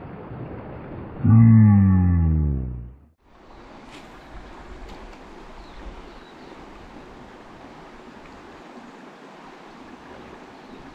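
Creek water running. About a second in, a loud drawn-out pitched sound glides steadily downward for nearly two seconds, like a long falling groan, and cuts off abruptly. A quieter, even rush of water carries on after it.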